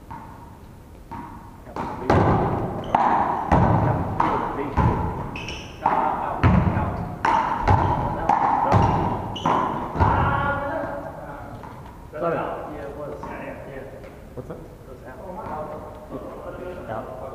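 One-wall handball rally: a small rubber ball struck by hand, hitting the wall and bouncing on the gym floor, a quick run of a dozen or so sharp thumps between about two and ten seconds in, each ringing on in the hall, then quieter.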